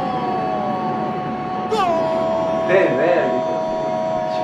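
Horns blowing two long, steady tones with an occasional falling glide, over the din of a stadium crowd.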